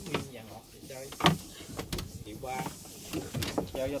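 Voices talking amid market bustle, with two sharp knocks, the louder about a second in.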